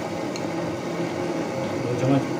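Beef, tomatoes and spices boiling in water in a wide pan, with a steady bubbling hiss over a constant low hum.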